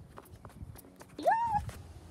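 Quick footsteps on pavement as someone runs, about three or four a second, then a short voiced squeal that rises and falls in pitch, a playful vocal sound effect.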